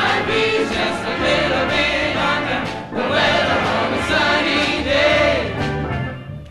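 Vocal jazz ensemble singing long held chords without clear words, backed by a jazz band with a steady bass line. It comes in two long phrases with a brief break about halfway.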